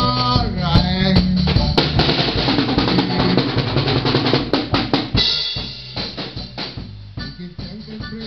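Live band music with a drum kit keeping the beat, bass drum and snare prominent, and a man's singing voice over it in the first couple of seconds. The music gets noticeably quieter about five and a half seconds in.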